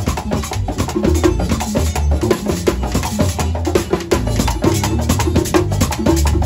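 Live Latin band music driven by hand-played congas and a scraped hand-held percussion cylinder, over a pulsing bass line, in a steady quick rhythm.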